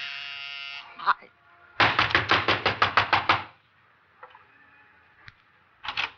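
Radio-drama sound effects at a front door: an electric door buzzer sounds steadily and cuts off about a second in. A quick run of about a dozen knocks on the door follows.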